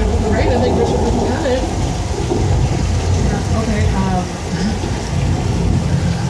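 Artificial rain from overhead sprinklers falling, a steady rushing noise over a low rumble, with scattered voices.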